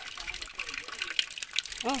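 Water gushing and splashing from a water line being flushed out because it is clogged, heard as a steady spatter of many small splashes.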